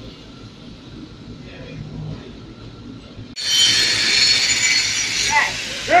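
Low shop background sound. About halfway through it is cut off abruptly by a handheld electric angle grinder running loudly against the steel go-kart frame, a steady high whine with grinding noise.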